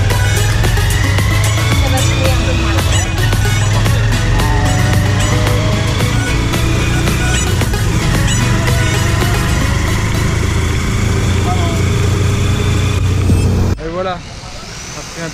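Motorcycle engine of a tricycle taxi running under way, its pitch slowly rising and falling with the throttle, mixed with background music. The sound cuts off suddenly just before the end.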